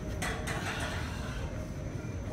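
Weight plates being lifted off a stack, a short scraping clatter of plate against plate about a quarter-second in, over a steady low hum.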